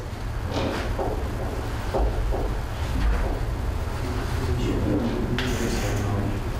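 Faint, indistinct voices in a room over a steady low hum, with a short rustling noise near the end.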